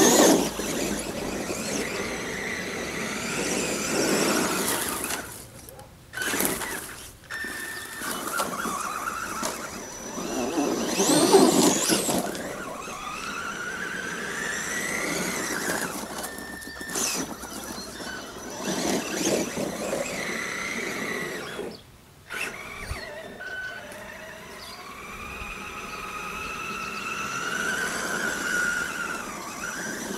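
Electric drive of a Traxxas E-Revo RC truck whining, its pitch rising and falling with the throttle through several bursts, cutting out briefly a few times.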